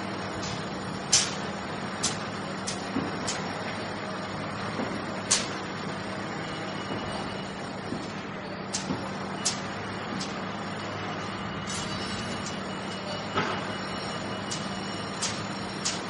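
Steady vehicle noise with a low hum while driving, broken by frequent sharp clicks and knocks at irregular intervals, the loudest about a second in.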